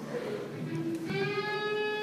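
A single pitched musical note held steady: a brief lower note about a third of the way in, then a slightly higher one sustained for over a second, over low hall murmur.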